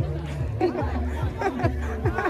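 Background music with a deep bass line whose notes slide down between each other, under people chattering, with a laugh near the end.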